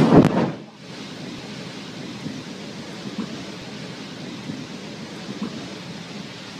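Low boom of a distant underwater explosion, loudest at the very start and fading within about a second, followed by steady noise like wind and sea on the microphone.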